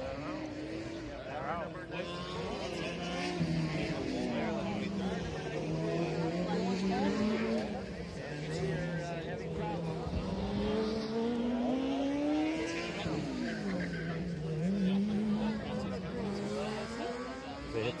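Race car engine running as the car laps the course, its pitch climbing over a second or two and then dropping back, again and again.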